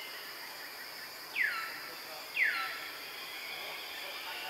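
Two short, high calls about a second apart, each sliding steeply down in pitch, over a steady high drone of insects.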